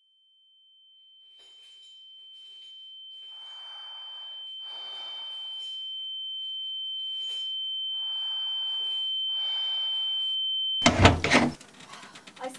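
A single steady high-pitched tone swells slowly in loudness for about ten seconds, then cuts off abruptly with a loud, deep thump about eleven seconds in.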